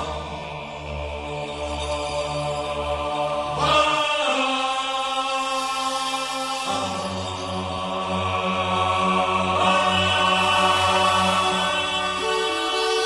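Background music of long held, chant-like notes, the chord changing twice.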